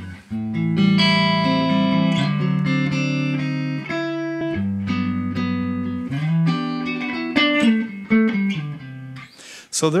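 Electric guitar, a sunburst Stratocaster-style, playing a chord progression: chords strummed and left to ring, changing every second or two. A man's voice starts just at the end.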